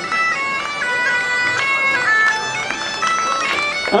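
Northumbrian smallpipes playing a quick, stepping melody over a steady drone.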